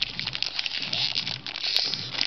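Foil wrapper of a Magic: The Gathering booster pack crinkling as it is handled, a busy run of small crackles.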